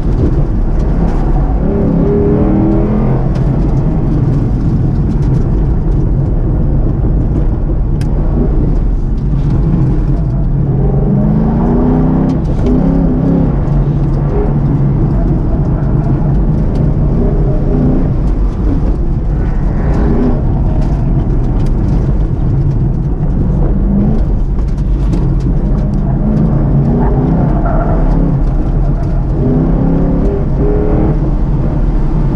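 A car's engine, heard from inside the cabin, being driven hard through an autocross course. The engine rises in pitch under acceleration several times and drops back between, over a constant low drone and road noise.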